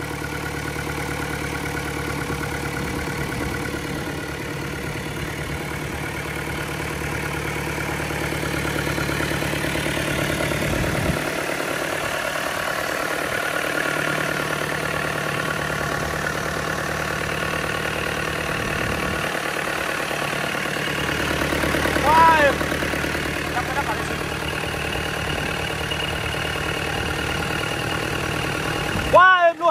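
FAW 498 four-cylinder turbo-diesel engine idling steadily on a test stand during a test run, its low note briefly changing around 11 and 20 seconds in.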